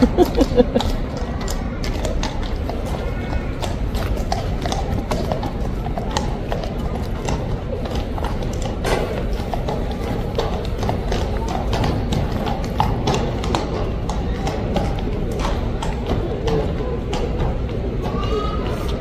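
A horse's hooves clopping irregularly on a hard surface as it shifts its feet, with people's voices in the background.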